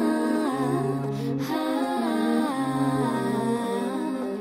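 Contemporary chamber music for voice, alto saxophone and baritone saxophone: long held notes in close harmony, some sliding in pitch, with a low note sounding twice underneath.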